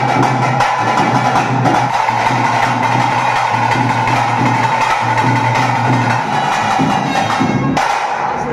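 Music led by fast, steady drumming, with a held note running through it.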